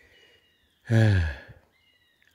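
A man's sigh: one voiced breath, falling in pitch, about a second in and under a second long.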